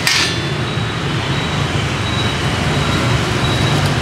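Steady street traffic noise, a continuous low engine rumble from passing motorbikes and vehicles. A brief crackle right at the start.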